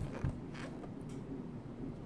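A large hardcover art book being handled as a page is held and turned: a short low bump just after the start, then faint paper and binding handling noise.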